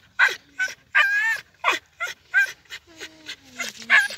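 A dog making short whining cries in quick succession, ending in a longer cry that falls in pitch.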